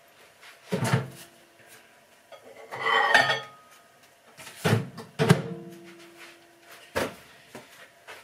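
Dishes and cutlery being handled: a handful of separate knocks and clinks spread over several seconds, one followed by a brief ringing tone.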